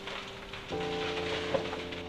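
Crackling of a large fire burning through the wooden halls of Shuri Castle: a dense, steady crackle with sharp pops, the loudest a little past the middle.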